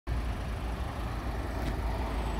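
Steady outdoor background noise with a low rumble underneath, the kind of sound a phone picks up outdoors from traffic and wind.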